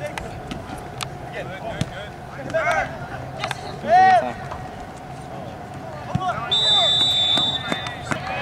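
Soccer players shouting across the field, with one loud yell about four seconds in, and scattered sharp thumps of the ball being kicked. About six and a half seconds in, a referee's whistle is blown once and held for just over a second.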